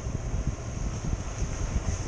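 Motorcycle ridden at speed, its engine rumbling under gusty wind buffeting on the microphone.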